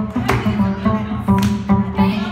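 Live acoustic guitar and bass playing a funky groove, with sharp percussive hits every half second to a second.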